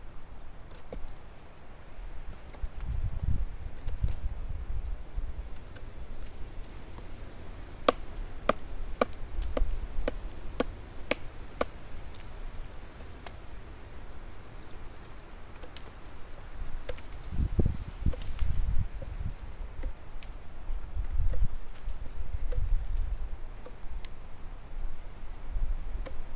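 A blade chopping and shaving at a wooden stick to carve a point on it. A run of sharp chops comes about two a second through the middle, with scattered single chops and dull low thumps before and after.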